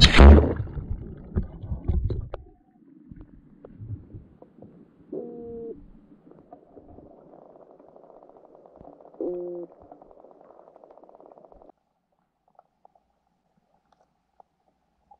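A camera splashing into shallow river water, then muffled underwater rumbling and knocking as it settles. Twice a short hum with a few steady tones comes through. The faint buzzing background cuts off suddenly about three-quarters of the way in, leaving near silence.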